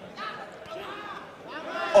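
A male commentator's voice over the steady background murmur of an arena crowd, growing louder at the very end.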